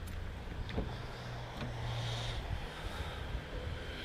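Faint, steady low rumble of distant road traffic.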